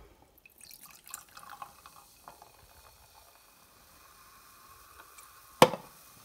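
IRN BRU Energy, a carbonated soft drink, poured from a can into a glass: uneven splashing and glugging at first, then a steady, faint stream filling the glass. A sharp knock near the end as the can is set down on the table.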